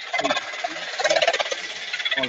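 Garbled, crackling distortion on a video-call audio feed, where the voice breaks up into a harsh, rapid chatter. It is the sign of the call audio echoing back.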